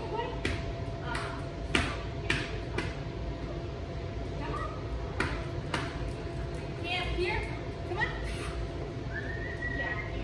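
Hands clapping to call a dog in: a quick run of about five claps, then two more a little after five seconds in. High-pitched coaxing calls follow near the end.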